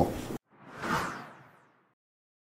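A single whoosh transition sound effect: a rush of noise that swells and fades within about a second, starting about half a second in, right after the interview's room sound cuts off abruptly.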